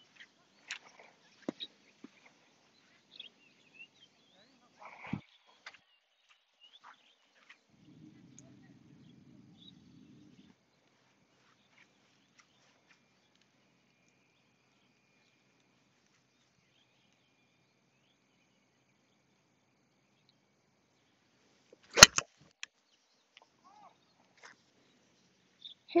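A single sharp click of an 8-iron striking a golf ball, the loudest sound by far, near the end. Before it there are only faint ticks and a brief low hum.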